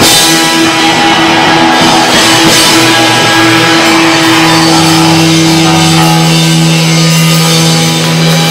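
Live punk rock band playing at full volume: distorted electric guitars and a drum kit, with no vocals. About halfway through, the guitars settle into a long held chord.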